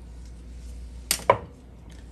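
Two quick, sharp knocks about a fifth of a second apart, a little past halfway, from a spice jar and measuring spoon being handled over a wooden cutting board and glass bowl. The second knock rings briefly.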